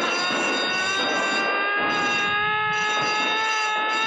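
An alarm siren sounding one long, steady high tone that sags slightly in pitch and recovers: the alarm for an escaped prisoner.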